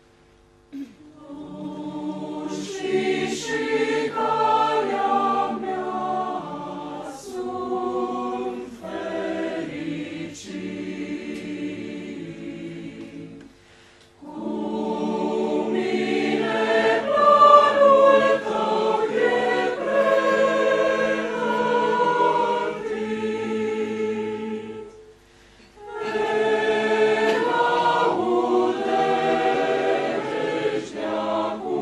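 Choir singing together in parts, starting about a second in and pausing briefly between phrases about 14 and 25 seconds in.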